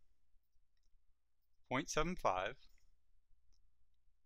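A man's voice speaks one short phrase about two seconds in, with a few faint clicks around it from numbers being entered into a computer calculator with the mouse.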